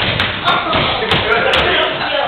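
Several people's voices over sharp taps and thuds of shoes on a wooden floor as they scuffle and dodge.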